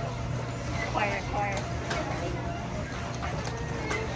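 Ride interior heard without its soundtrack: a steady low hum with a few sharp clicks scattered through it, and brief murmured voices of other riders about a second in.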